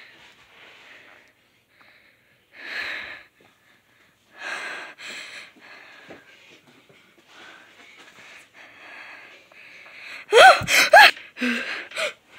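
A person breathing hard, with a few loud, noisy breaths and softer ones between. Near the end come two short rising squeaks, the loudest sounds.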